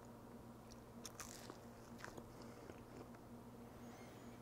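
Faint chewing of a bite of a syrup-dunked pancake-batter sausage bite, with a few soft crunchy clicks about a second and two seconds in, over a low steady hum.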